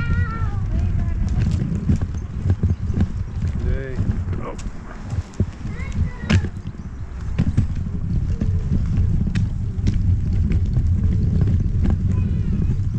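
Pushchair wheels rolling over a rough tarmac and paved path: a steady low rumble with scattered clicks and knocks. Brief wordless voices come now and then.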